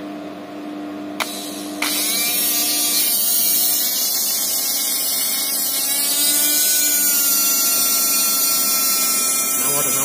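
Freshly rewound 775-size 12 V brushed DC motor powered from a battery: a click as the wires touch the terminals, then the motor starts up almost at once and runs free at full speed with a steady high whine.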